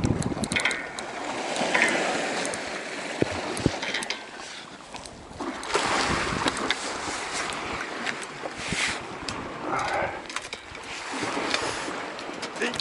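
Sea water washing and surging against a rocky shore, with wind on the microphone. Scattered sharp clicks and knocks of rod and reel handling come through as a hooked fish is reeled in and lifted out onto the rocks.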